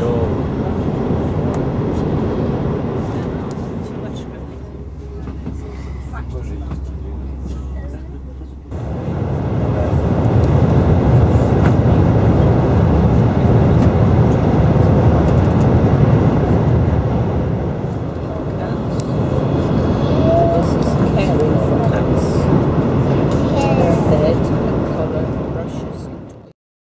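Steady low rumble and rush of a TGV Euroduplex high-speed train heard from inside the passenger coach while running at about 309 km/h. About nine seconds in the noise jumps abruptly to a louder, deeper rumble.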